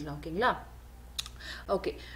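Speech, a short voiced sound and then a spoken 'okay' near the end, with a sharp click and some soft tapping in the pause between.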